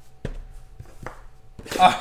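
Cardboard trading-card box handled on a table: two sharp taps about a second apart, then a man starts talking near the end.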